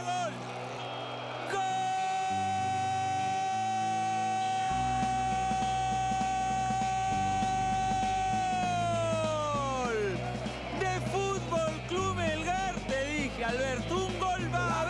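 A football commentator's long drawn-out "goal" shout, held on one note for about seven seconds and then sliding down as it trails off. Background music plays underneath.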